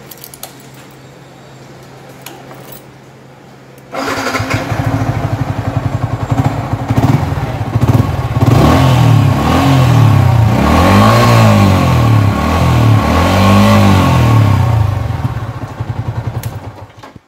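Yamaha R15's single-cylinder four-stroke engine, with its stock exhaust, running at idle. From about four seconds in it is revved repeatedly with the throttle, its pitch rising and falling in several swells.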